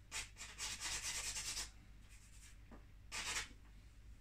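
Charcoal rubbed across drawing paper: a quick run of short scratchy strokes, then a pause and one more stroke near the end.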